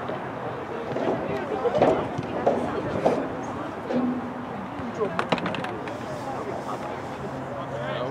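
Voices of players and spectators calling out during a soccer match, with a couple of sharp knocks about five seconds in.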